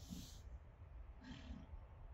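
A Friesian horse cantering loose gives two short snorts about a second apart, over a low rumble of wind on the microphone.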